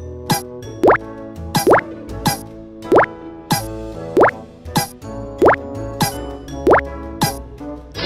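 Cartoon 'plop' sound effects: a quick rising bloop about one and a half times a second, a dozen in all, each as another toy train wheel pops onto the track, over cheerful children's background music.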